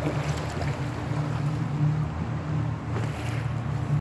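A small boat's motor running with a steady low hum, with wind and water noise on the microphone.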